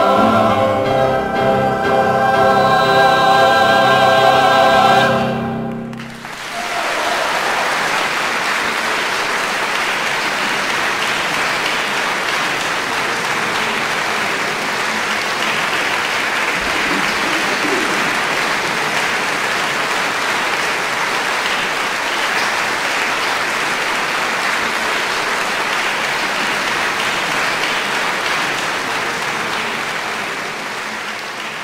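A mixed choir holds its closing chord steadily and releases it about five seconds in. Audience applause follows almost at once and continues evenly.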